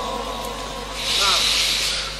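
Steady hiss of a public-address microphone and amplifier in a pause between recited phrases, with faint voices in the background. The hiss swells into a louder rush about a second in.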